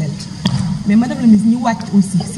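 A woman speaking into a microphone, with a single short knock about half a second in.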